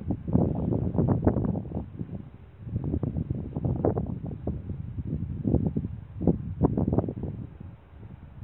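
Wind buffeting the microphone in irregular gusts, a low rushing noise that surges and drops every second or so.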